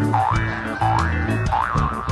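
Upbeat background music with a steady bass beat, overlaid with a comic 'boing'-type sound effect: a quick swooping pitch glide, dipping and rising again, repeated about every half second, four times.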